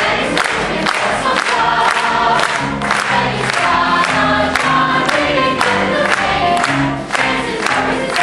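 Musical theatre cast singing a finale together in chorus over instrumental accompaniment with a steady beat.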